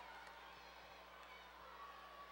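Near silence: faint room tone of a large indoor arena.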